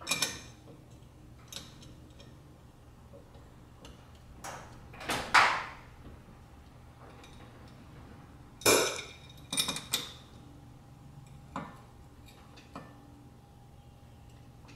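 Hand wrench clinking and scraping on the bolts of a driveshaft's rubber flex disc (guibo), in short, scattered metal-on-metal clinks. The loudest, a longer scrape, comes a little after five seconds in, with a quick cluster of clinks near nine to ten seconds.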